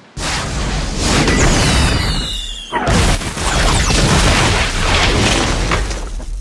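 Explosion: a loud blast just after the start, then a second blast about three seconds in, each followed by a long rumble and crackle, with a high falling whistle before the second blast.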